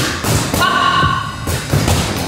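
Background music with several heavy thuds landing through it, two of them close together near the end.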